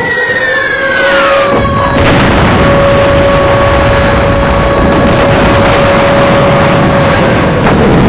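Falling-bomb whistle sound effect sliding down in pitch over the first two seconds, then a loud, long explosion rumble that holds for about six seconds, with a steady tone held underneath.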